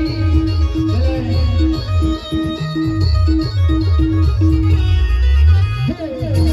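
Adivasi Timli band music led by an electronic keyboard: a repeated, plucked-sounding short note pattern over a heavy beat of falling bass drops. Near the end the bass rises in a sweep, then the music briefly cuts out.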